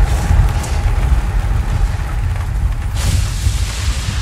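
Loud, continuous deep rumble with a hiss over it that grows louder about three seconds in, a rumbling, storm-like soundtrack effect.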